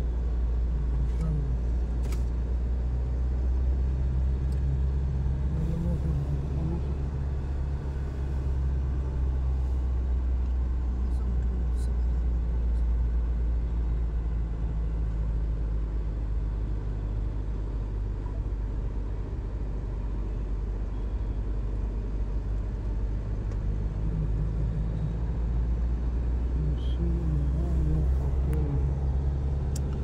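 Car engine and tyre noise heard from inside the cabin while driving: a steady low drone.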